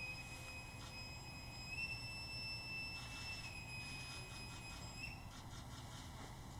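Boatswain's pipe (bosun's call) piping the side, the naval honour for an officer departing through the side boys: one long shrill whistle note that steps up slightly in pitch about two seconds in, drops back at about three and a half seconds, and ends about five seconds in.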